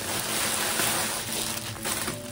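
Continuous rustling handling noise as a handbag is reached for and moved, a steady rushing hiss for about two seconds.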